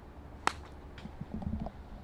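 A golf iron striking the ball off the tee: one sharp click about half a second in. The shot is struck thin.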